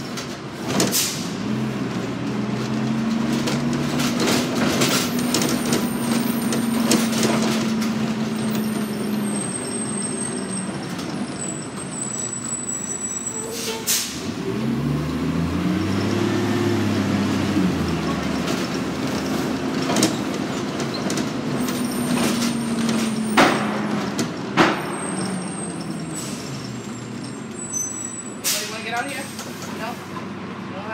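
New Flyer D40LF diesel bus running, heard from inside the cabin: its engine note climbs as it pulls away a couple of seconds in, holds, then dies back, and climbs and falls again about halfway through. Short sharp air hisses, typical of the air brakes, come several times in the second half.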